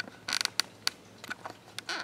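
Camera handling noise: a short scratchy rustle about a third of a second in, then a few sharp clicks.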